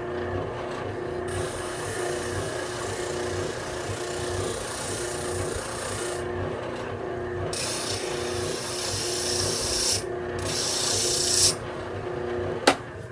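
Benchtop spindle sander running with a steady motor hum while a piece of wood is pressed against its sanding drum. The rasping sanding noise starts about a second in and comes and goes, breaking off briefly about six and ten seconds in.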